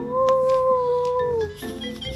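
A single held high-pitched call, about a second and a half long and dipping slightly in pitch at the end, over background music.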